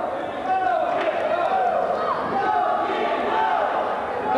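Wrestling arena crowd shouting and yelling, many voices overlapping throughout.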